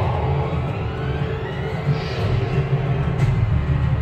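Cinematic film soundtrack played back over room speakers: a deep, steady rumble with a rising swell that peaks about two seconds in.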